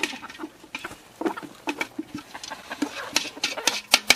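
A flock of chickens pecking at cooked rice scattered on bare dirt: quick, irregular taps of beaks on the ground, with some short low clucks.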